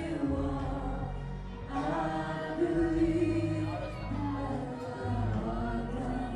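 Karaoke singing: a woman and a man singing into microphones over a recorded backing track with a steady bass line, amplified through the PA. The sung notes are long and held, with a louder sustained line about halfway through.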